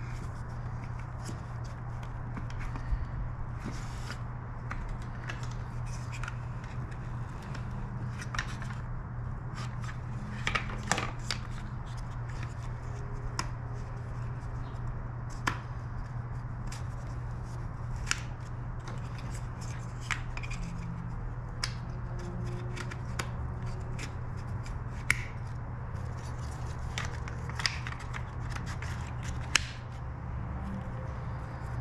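Small plastic clicks and knocks as wiring plugs and an electronics unit are handled and pushed back into their mounts in a motorcycle's wiring bay. They come irregularly, a few sharper ones standing out, over a steady low hum.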